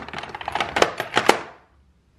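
Glass perfume bottles clinking and knocking against one another as a hand picks through them on a glass tray: a quick series of sharp taps that stops about a second and a half in.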